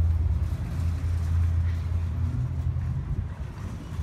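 Steady low hum of a motor vehicle engine running.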